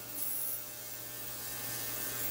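Ultrasonic cleaner running its degassing cycle, driving the dissolved gas bubbles out of the water in its stainless tank: a steady electric hum with a faint hiss.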